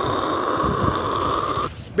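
A man's mouth-made jet-plane noise: one long, steady rushing, rumbling breath that cuts off suddenly near the end.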